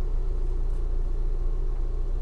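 Ford Bronco idling, heard from inside the cabin as a steady low rumble with a faint hum above it.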